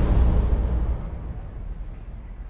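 Outdoor noise: a loud low rumble with a hiss above it, fading away steadily.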